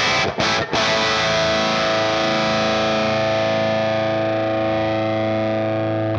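Electric guitar played through a J. Rockett Airchild 66 compressor pedal: two or three quick choppy strums, then a chord left to ring, held even for about five seconds.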